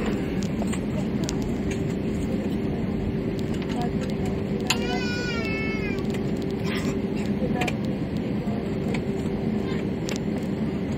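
Steady cabin noise of a jet airliner taxiing, its engines running with an even hum. About five seconds in, a short, high, wavering cry from a small child in the cabin.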